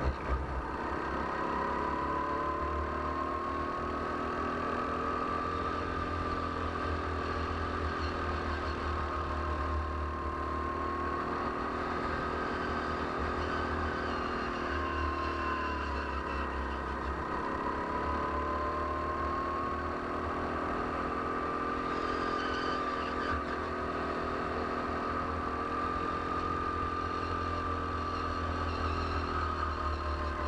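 Go-kart engine heard from onboard at racing speed, its pitch climbing and falling several times as the kart accelerates along straights and slows for corners.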